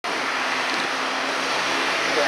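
Folkrace cars' engines running out of sight, a steady low hum of engines under an even noisy hiss.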